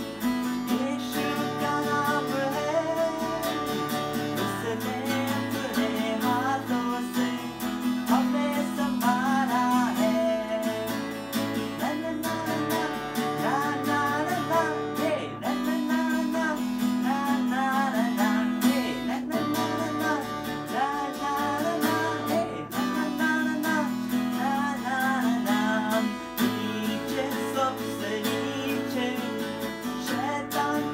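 Acoustic guitar strummed in steady chords with a man singing a Hindi children's worship song over it, the chords changing every few seconds.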